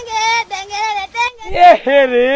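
A high-pitched voice singing in a few long, wavering notes, dropping to a lower wavering note about one and a half seconds in.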